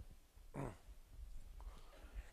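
A single short squeak, falling steeply in pitch, about half a second in, over faint low room rumble.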